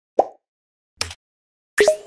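Three short cartoon-style pop sound effects, about a second apart, with silence between them; the last is longer, with a quick rising swish.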